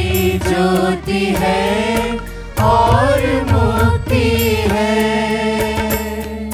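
Mixed church choir singing a Hindi psalm together into microphones, accompanied by an electronic keyboard with sustained bass and a steady beat.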